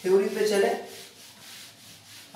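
Whiteboard eraser rubbing over a whiteboard, wiping off marker writing: a faint, scratchy rubbing sound.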